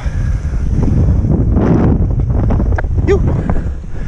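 Heavy wind buffeting on the microphone of a camera on a foiling stand-up paddleboard: a loud, steady low rumble, with a louder rush about a second and a half in. Near the end the rider exhales a breathy "phew".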